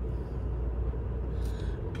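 Cabin sound of a 2008 Lincoln Town Car's 4.6-litre V8 running near idle as the car creeps along at walking pace, a steady low rumble.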